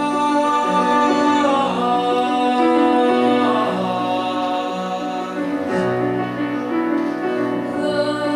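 A teenage boy singing a duet in long held notes, several pitched parts sounding together, with a girl's voice coming in near the end.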